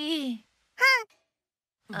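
Dubbed cartoon character voices: a drawn-out wordless voiced sound, a short high call about a second in, then a breathy sigh starting near the end.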